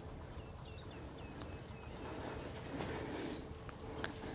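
Faint outdoor ambience: a steady high-pitched insect drone, with a quick run of about seven short falling chirps in the first second and a half and a few faint clicks near the end.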